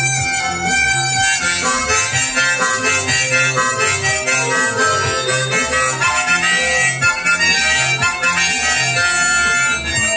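Harmonica playing an instrumental solo over a rock band accompaniment with a steady bass and drum beat.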